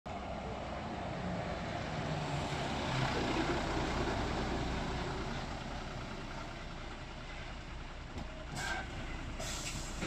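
Steady rumble of a large vehicle running. It swells over the first three seconds and then eases off, with two short, sharper noises near the end.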